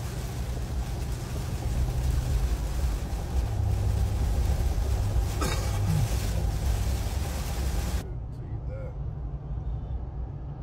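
Heavy rain and road spray hissing loudly against a moving car, heard from inside the cabin over a steady low road rumble. About eight seconds in the hiss stops abruptly, leaving only a quieter low rumble.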